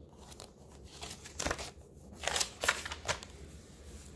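Paper pages and cards of a handmade junk journal being turned and handled, giving a few short rustles, the loudest about halfway through.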